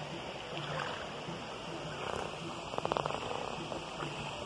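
Shallow creek water running and stirring around bare feet wading through it. About three seconds in comes a brief, rapid rattle lasting under half a second.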